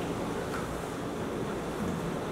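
Steady room noise picked up by the microphones: an even low hiss and rumble with a faint hum.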